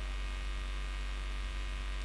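Steady electrical mains hum in the microphone and sound-system feed: a low drone with a ladder of even, higher overtones, unchanging throughout.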